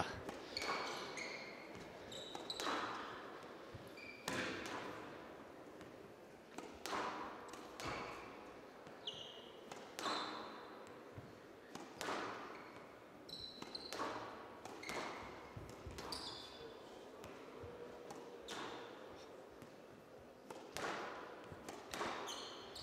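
Squash rally: the ball is struck by rackets and hits the court walls in sharp cracks every one and a half to two seconds, ringing briefly in a large hall. Short high squeaks of shoes on the court floor come between the shots.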